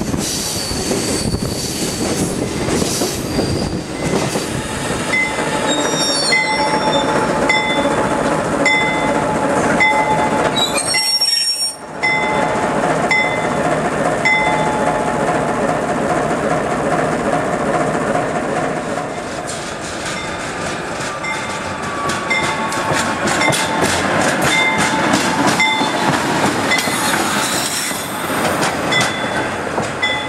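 A passenger train running on the rails, with a steady rumble of wheels and regular clicks about one a second. Short wheel squeals are mixed in, and the sound breaks off briefly a little over a third of the way in.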